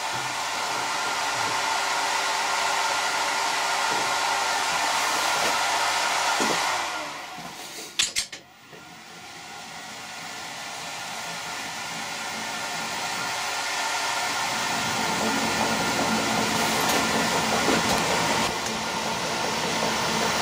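Colchester lathe's motor and headstock gearing running with a steady whir. About seven seconds in it winds down, a sharp click follows, then it spins back up and grows steadily louder: the lathe running again at a lower speed set on its inverter, slowed for screw cutting.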